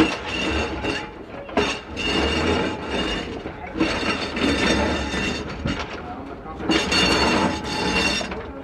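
Sydney freight tram 24s rolling slowly along the rails, its running gear rumbling with a high-pitched squeal that comes and goes.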